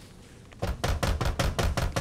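Rapid knocking or banging, about ten sharp strokes a second with a heavy low thud, starting about half a second in and running on.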